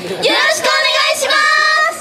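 Young female idol group singing together through handheld stage microphones, a melodic line ending in held notes.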